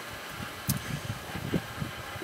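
Wind buffeting the microphone outdoors: an uneven low rumble in gusts, with one faint tick about 0.7 s in.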